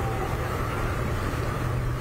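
Steady outdoor background noise picked up by a field microphone: a continuous low rumble with an even hiss over it.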